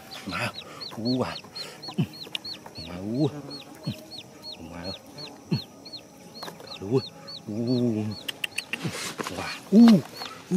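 Chickens clucking in short calls while a person calls them in with repeated "ma". Throughout, a thin high chirp repeats two or three times a second, and a louder, noisier burst comes near the end.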